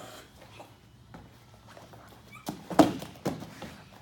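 A child falling onto a padded floor mat during an ankle-pick takedown: a quick cluster of thuds and scuffles a little past halfway, the loudest just under three seconds in, mixed with a child's laughing cry.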